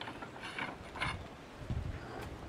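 Homemade barbell of stone discs on a metal bar being handled: two short scraping clanks about half a second and a second in, then a dull low thump near the end.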